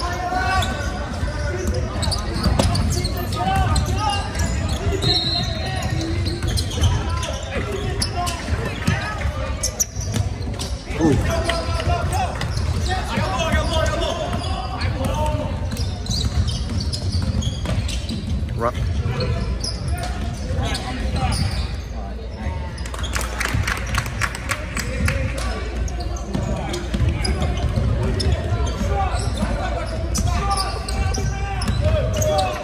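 A basketball bouncing on a hardwood gym floor during play, with a background of people talking on and around the court in a large gym.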